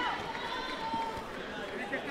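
Overlapping voices of many people talking and calling out across a large sports hall, with no single clear speaker.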